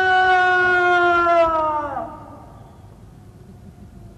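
A man shouting a parade-ground drill command, "Tegak senjata!" (order arms), with the last syllable drawn out long on one pitch. It falls off and ends about two seconds in, leaving quieter open-air background.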